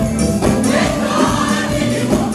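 Live gospel praise music: a choir singing over instrumental backing with a steady beat.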